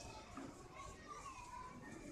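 Faint, distant chatter of children's voices in a pause between amplified speech.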